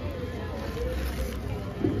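Outdoor crowd background: a steady low rumble with faint distant voices and no nearby speech.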